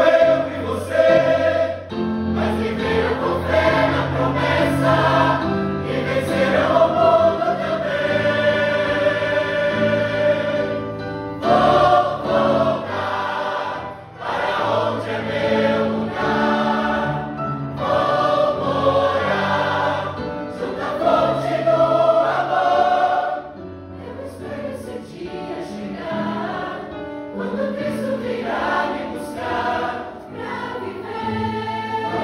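Mixed choir of men and women singing a hymn together, with short breaks between phrases about halfway through and again around two-thirds of the way in.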